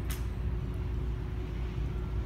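A single sharp click from the honor guards' rifle drill, just after the start, over a steady low outdoor rumble.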